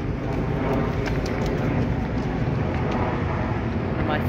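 Steady low rumble of road traffic on a bridge.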